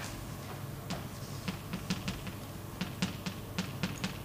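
Chalk writing on a blackboard: a string of short, sharp taps and scratches at irregular spacing as the letters go on, coming thicker in the second half.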